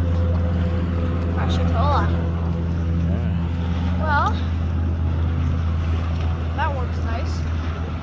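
A steady, unbroken low engine drone, with short snatches of voices over it.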